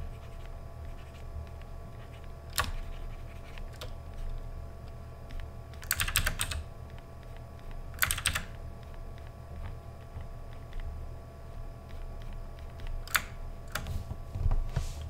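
Computer keyboard keys and mouse buttons clicking: a few single clicks and two short quick runs of keystrokes about six and eight seconds in, over a low steady hum.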